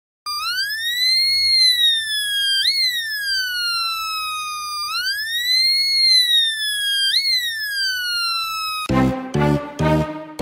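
Homemade two-NE555 police siren circuit sounding through a small speaker. A buzzy electronic tone rises, slides down, jumps back up and slides down again, and the cycle repeats twice. Rhythmic music comes in near the end.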